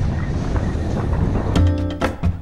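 Wind buffeting a GoPro's microphone, a steady low rumble and hiss. About a second and a half in, background music with drum hits starts.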